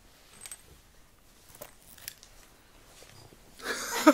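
A quiet room with a few faint clicks and rustles of someone moving about, then a man bursts out laughing near the end.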